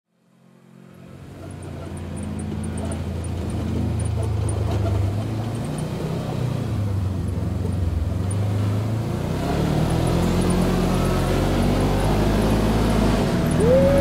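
Kawasaki side-by-side UTV driving up a dirt track toward the listener, its engine growing steadily louder as it approaches and fading in from silence at the start. Near the end, as it draws close, the engine pitch briefly rises.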